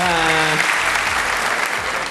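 Studio audience applauding steadily. A man's drawn-out word trails off under the clapping in the first half second.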